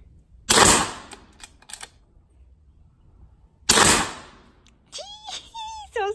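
Two shots from a Sumatra 500cc pre-charged pneumatic air rifle, about three seconds apart, each a sharp crack that dies away quickly. A brief voice is heard near the end.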